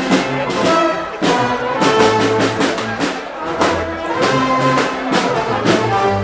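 Brass band playing live in a large, crowded beer tent: held brass notes over a bass line and a steady beat, with crowd chatter underneath.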